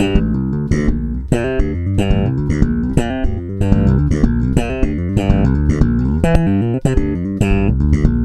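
Solo electric bass guitar played slap style: a busy funk riff of thumbed notes, pops and hammer-ons in a quick, unbroken run of notes with sharp percussive attacks.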